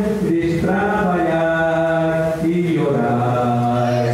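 A man singing into a microphone in long held notes, the tune stepping down in pitch twice in the second half.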